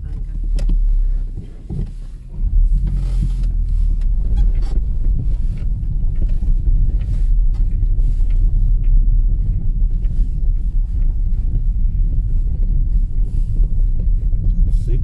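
A car driving slowly along a rough dirt road: a steady low engine and road rumble, with scattered small knocks and clicks from the uneven surface.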